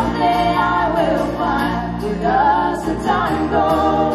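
A country song played live on two acoustic guitars and an electric bass, with several voices singing together in harmony.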